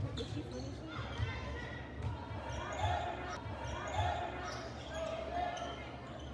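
Basketball bouncing on a hardwood gym floor during play, a run of irregular thuds. Scattered players' and spectators' voices echo in the large gym.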